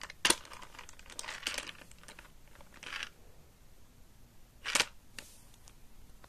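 Hard plastic clicks and knocks from a toy RC stunt car being picked up and turned over in hand, with rubbing handling sounds in between; the sharpest click comes about a third of a second in and another strong one near the five-second mark.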